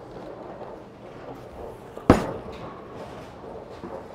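A Storm Sun Storm bowling ball released onto the lane: one sharp thud about two seconds in as it lands, the loudest sound, followed by a faint steady sound of the ball rolling away.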